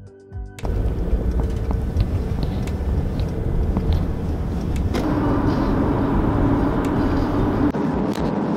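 A car driving, its road and tyre rumble heard from inside the cabin, cutting in suddenly about half a second in after a moment of soft music. A steady hum joins the rumble about five seconds in.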